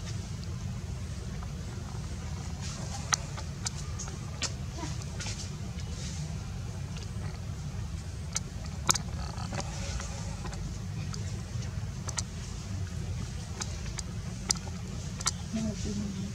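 Steady low outdoor rumble, with about a dozen short sharp clicks scattered through it.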